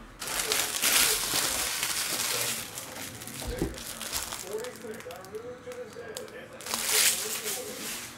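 Foil trading-card pack wrappers crinkling in two stretches: a long one in the first couple of seconds and a short one about seven seconds in, with a light knock between them.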